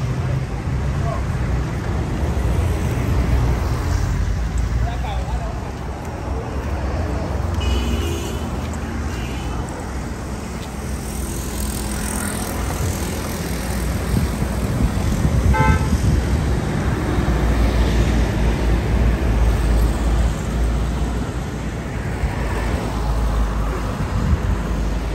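Roadside traffic: a steady low rumble of passing cars, with a couple of short car horn toots, one about eight seconds in and another about halfway through.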